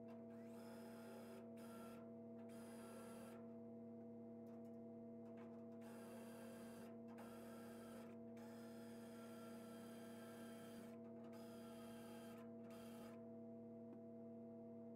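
Cordless drill drilling into the steel inner door panel of a 1941 Chevy truck, its motor running in a string of short bursts of one to two seconds with brief pauses, stopping about a second before the end. A steady low hum runs underneath.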